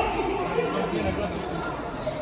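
Indistinct voices of several people talking and calling out in a large, echoing hall.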